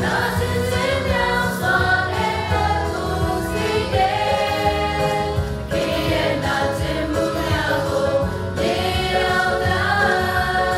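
A choir singing a Christian song over instrumental backing, with long held notes.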